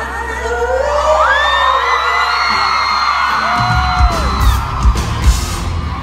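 A live rock band rings out the end of a song, a held chord under fans whooping and screaming. From about halfway through, heavy drum and cymbal hits pound out the song's close.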